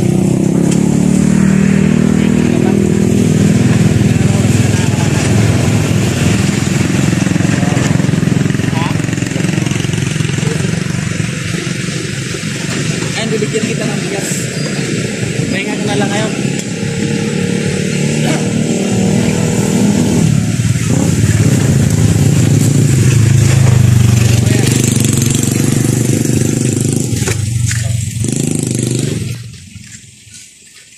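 Yamaha motor scooter's engine idling steadily under men's conversation.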